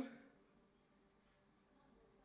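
Near silence: faint room tone, just after a man's voice trails off at the very start.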